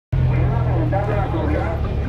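Roadside traffic noise: a vehicle engine's steady low hum, with people talking faintly in the background.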